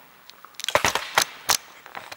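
About four short, sharp clicks and knocks in quick succession around the middle, like hard objects being handled.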